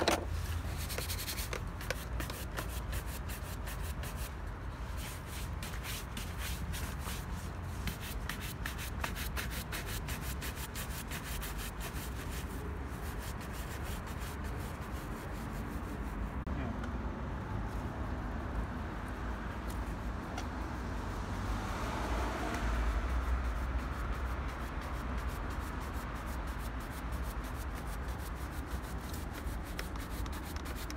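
A wooden-backed shoe brush scrubbed briskly back and forth over a polished black leather shoe, buffing the wax: a continuous run of quick rubbing strokes.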